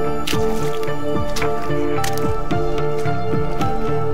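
Background music with sustained chords and a regular beat, over hiking boots squelching and splashing step by step through wet peat mud and puddles.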